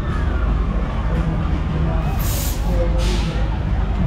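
Funfair ride machinery running with a steady low drone, two short hisses of released air about two and three seconds in, and voices in the background.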